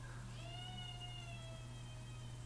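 One drawn-out pitched cry lasting about a second, easing slightly down in pitch, over a steady low electrical hum.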